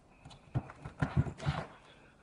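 Hand seam roller worked over EPDM rubber membrane flashing on a pipe mock-up, giving four knocks: one about half a second in, then three in quick succession.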